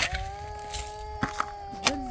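A shovel blade striking hard, stony soil three times in the second half, sharp knocks with the last the loudest, under one long held voice note.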